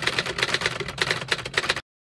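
Typewriter sound effect: a rapid run of key clacks as text is typed out, stopping abruptly shortly before the end.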